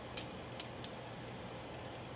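Three faint, short clicks in the first second over quiet room tone with a low steady hum: the thin pages of a large Bible being handled.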